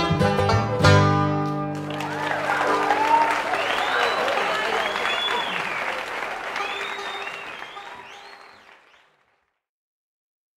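A bluegrass band of banjo, guitar and bass ends the song on a final chord that rings for the first second or so. A live audience then applauds and cheers, and the sound fades out to silence about nine seconds in.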